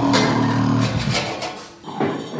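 Experimental improvised music: a low, buzzy pitched sound with a growl-like quality, held for about a second, then rougher noisy texture that dies down near the end.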